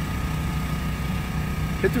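Engine of the band-steam applicator rig running steadily: an even low hum with a faint steady high tone above it.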